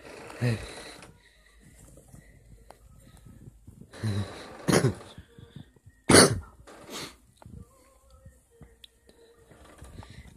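A young person coughing and making a few brief non-word vocal sounds, the sharpest just past the middle, with quiet stretches and faint handling noise between.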